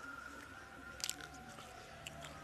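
Close-miked chewing of a mouthful of chicken biryani, with small wet mouth clicks and two sharp crisp clicks close together about a second in.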